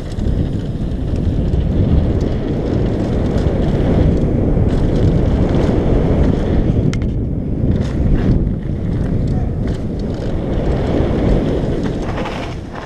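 Wind buffeting the microphone of a helmet-mounted action camera over the rumble of mountain-bike tyres on a gravel trail at speed. A few sharp clicks break through about halfway in.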